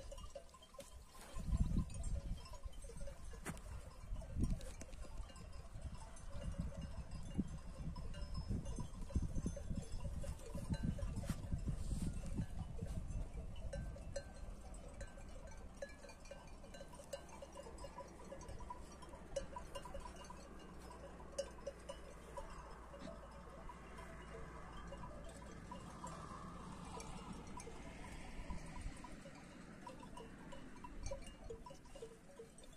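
Bells on a grazing flock of sheep, many small clinks and tinkles overlapping without pause. A low rumble sits under them in the first half.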